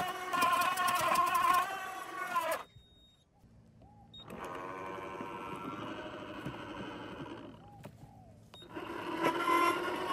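Ryobi 36V brushless crushing shredder's motor whining as it crushes a thick branch, then slowing and stopping about two and a half seconds in as the branch jams. After a brief near-silent pause the motor spins up again at a lower pitch and runs steadily in reverse to free the branch, cuts out, and starts up again near the end.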